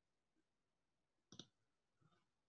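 Near silence, broken by one short, faint click about a second and a third in.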